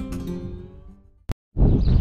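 Acoustic guitar background music with held plucked notes, fading out over about a second. A brief click and a moment of silence follow, then outdoor sound with a low rumble cuts in.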